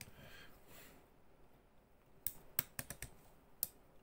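Faint clicks of the ratcheted arm joints of a Soul of Chogokin GX-101 Daitetsujin 17 figure as the arm is worked by hand: a quick run of about five clicks past the middle and one more near the end.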